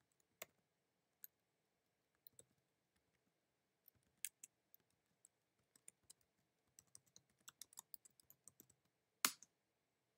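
Faint computer-keyboard typing: scattered single keystrokes, then a quick run of keys about seven seconds in. A louder single key press comes near the end as the command is entered.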